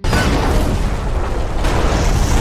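Film explosion of a cargo truck's box: a loud blast that starts suddenly and carries on as a steady, deep wall of noise.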